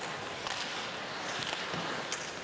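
Ice hockey arena ambience: a steady wash of crowd noise and rink sound with a faint knock about half a second in.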